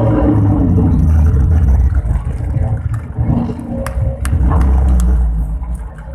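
A loud, low rumble with a few sharp clicks a little after the middle.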